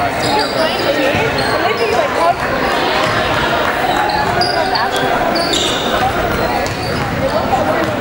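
Live sound of an indoor basketball game in an echoing gym: sneakers squeaking on the hardwood, the ball bouncing, and players and spectators calling out and chattering over one another.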